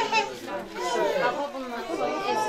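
Several voices talking over one another: indistinct chatter of a group gathered round a table.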